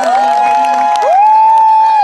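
A group of voices singing a Līgo song, holding long drawn-out notes that slide up at the start and drop away at the end, loudest in the second half.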